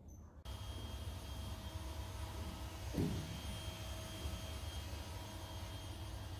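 A steady mechanical hum with a low rumble and faint high whining tones, with one short sound about halfway through.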